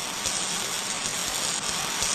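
Welding sound effect: the steady hiss of a welding torch laying a bead along a seam.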